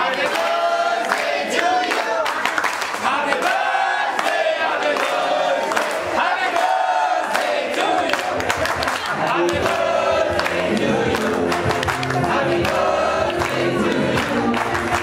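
A group of voices singing together, with many people clapping along.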